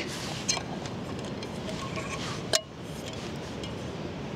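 Fire Maple Feast non-stick aluminium frying pan being handled and its folding handle swung out: a light click about half a second in and one sharp metallic click about two and a half seconds in.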